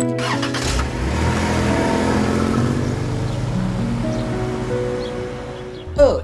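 Film soundtrack music with a car driving, its rushing engine and road noise fading out toward the end.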